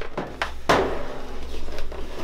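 Large plastic snake-rack tub being handled and shifted: a few light knocks, then a sudden scraping rustle about two-thirds of a second in that fades over about a second.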